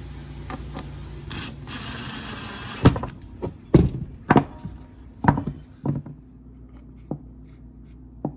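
A cordless drill-driver runs for about a second and a half, turning a screw in a small wooden mold box, followed by a series of sharp wooden knocks and thuds as the box is handled on the bench.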